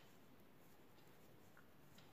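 Near silence, with a few faint ticks of metal knitting needles as stitches are worked.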